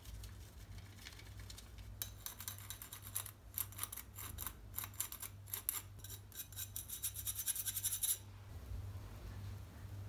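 A metal spoon scraping quickly around a fine wire-mesh sieve, pushing powder through it in a run of short, scratchy strokes. The scraping starts about two seconds in and stops about two seconds before the end, over a faint steady hum.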